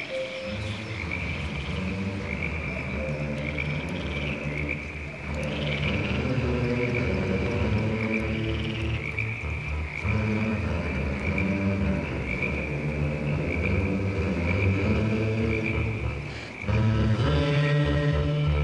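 A chorus of frogs croaking in low overlapping tones, with a steady high trill above them, growing louder near the end.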